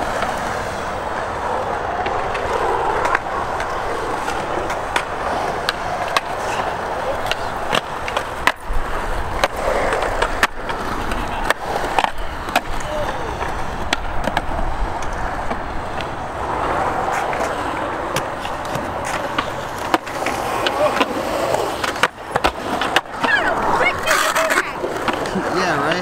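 Skateboard wheels rolling steadily over concrete, with sharp clacks now and then from tails popping and boards landing.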